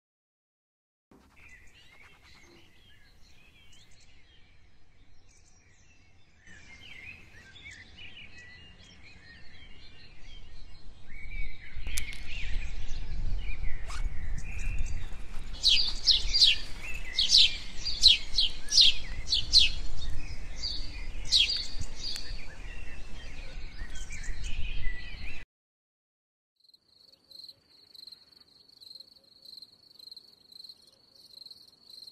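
Garden ambience of birds chirping, growing louder, with a low rumble underneath and a run of sharp high chirps in the second half. It cuts off abruptly near the end, and a steady, pulsing high trill of crickets follows.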